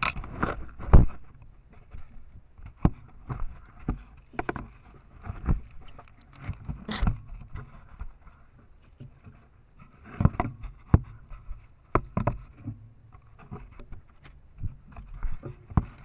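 River otter tugging at a trail camera at close range, picked up by the camera's own microphone: irregular knocks, bumps and scrapes as its muzzle and body push against the camera housing.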